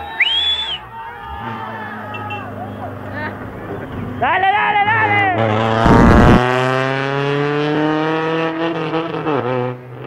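Rally car engine revving hard as the car approaches, a loud rush of noise as it passes close by about six seconds in, then the engine note climbing steadily as it accelerates away. Spectators shout near the start.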